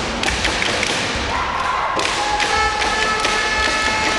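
Basketball game noise in a sports hall: the ball bouncing and players' feet thudding on the court in a string of sharp knocks. About halfway through, steady held tones join in.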